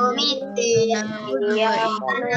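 Children chanting an Arabic prayer (doa) together in a sing-song melody through video-call audio, several young voices overlapping slightly out of step.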